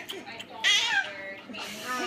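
A toddler's high, wavering, meow-like cries, one about half a second in and another near the end.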